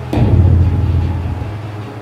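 A single deep boom, sudden about a tenth of a second in and fading away over a second and a half: a low impact sound effect laid under a flash transition between clips.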